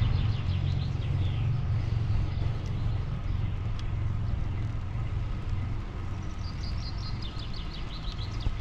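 Steady low rumble of wind and road noise while riding a road bike, with a bird chirping a quick run of short high notes at the start and again near the end.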